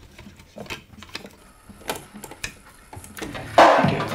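Small mechanical clicks and knocks from a wind-up horn gramophone being handled and set going. About three seconds in, the record starts playing: loud music with a strong beat about once a second.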